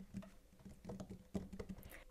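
Faint, irregular light taps and knocks of hands shifting on a wooden tabletop, with one slightly louder tap about two-thirds of the way through.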